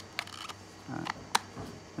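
A few sharp clicks, the loudest about a second and a half in, with a brief rustle, from a bird-call speaker box being handled as batteries are fitted into it.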